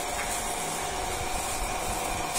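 A steady, even hiss with a faint constant hum under it, unchanging throughout.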